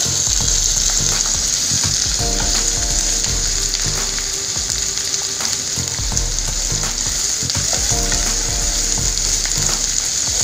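Chopped vegetables (onion, carrot, beans) sizzling steadily as they stir-fry in a kadai, with the occasional scrape and click of a wooden spatula against the pan as they are stirred.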